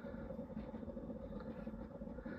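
Faint, steady low rumble with a light hiss and no distinct event.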